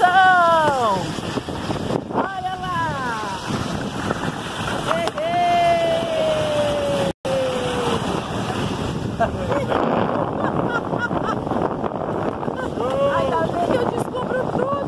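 Wicker basket toboggan sliding fast down an asphalt street: a steady rushing of its wooden runners on the road mixed with wind on the microphone. Over it come the riders' excited calls, one long falling whoop near the middle.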